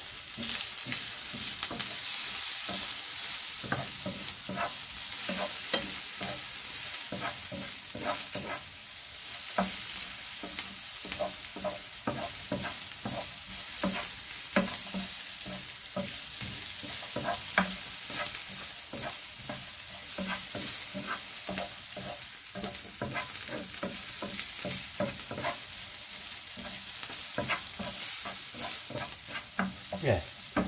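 Sliced onions sizzling in oil in a non-stick frying pan as they soften, stirred and pushed around with a wooden spatula. A steady hiss runs throughout, with frequent short scrapes and taps of the spatula against the pan.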